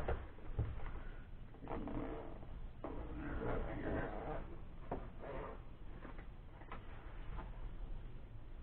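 Zipper of a black fabric drone carrying bag being pulled open in a few strokes, with rustling and small knocks as the bag is handled.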